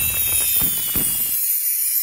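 Intro sound effect for an animated logo: a firework-like crackle and rumble of irregular pops under a high glittering shimmer. The rumble cuts off about one and a half seconds in, leaving the shimmer alone.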